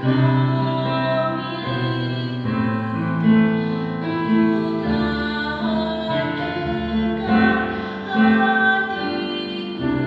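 Women singing a song together into handheld microphones, with instrumental accompaniment under the voices.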